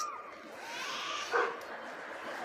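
A dog barking: one short, sharp bark a little past the middle, over a steady hiss of street noise.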